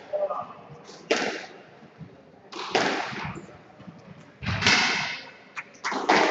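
Squash rally: the rubber ball struck by rackets and smacking the court walls, a sharp hit every second or so, each echoing in the court.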